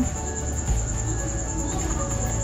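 Crickets chirping in a steady, high-pitched trill, with a low hum underneath.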